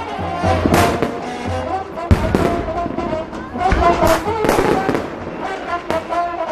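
Fireworks bursting overhead: several sharp bangs at irregular intervals, the sharpest about two seconds in, over music playing throughout.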